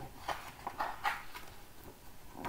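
Paper rustling and soft handling noises as a picture book's page is turned, in a series of short scratchy swishes.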